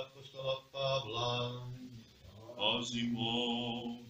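A man's voice chanting in Orthodox liturgical recitative on long held notes at the start of the epistle reading; about two and a half seconds in the chant moves up to a higher sustained note.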